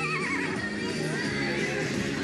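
Background music with a horse whinnying at the very start: one wavering call falling in pitch, lasting under a second.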